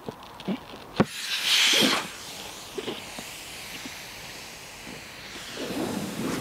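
A screwdriver punctures a Paul Chek Dura-Ball Pro anti-burst exercise ball with a sharp click about a second in. Air rushes out in a loud hiss for about a second, then settles to a faint steady hiss: the ball has a small hole but has not ripped or exploded.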